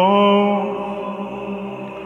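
A man chanting Orthodox liturgical chant through a microphone, holding one long steady note at the end of a phrase that slowly fades away.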